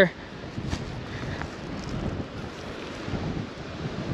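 Wind blowing on the microphone: a steady, rushing noise, heaviest in the low end.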